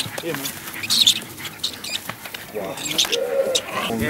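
Men's excited wordless calls and whoops, with short high-pitched squeaks scattered among them.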